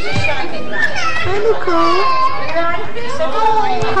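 Young children's voices and chatter from a room full of playing children, with high-pitched calls overlapping throughout; near the end an adult gasps, laughs and calls out "Hi!"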